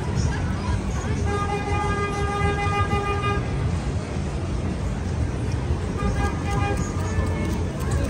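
A car horn honks in one long, steady blast of about two seconds starting a little over a second in, then a shorter honk about six seconds in, over the constant rumble of city street traffic.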